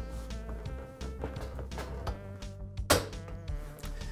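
Rear flap of a lawn mower deck being bent and pulled free of its metal hinge clip, with one sharp click about three seconds in, over a faint steady hum.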